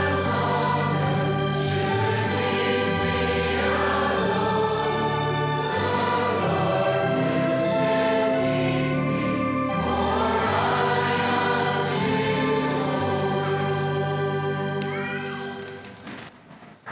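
Church congregation singing the last lines of a hymn to organ accompaniment, with long held chords; the final chord dies away near the end.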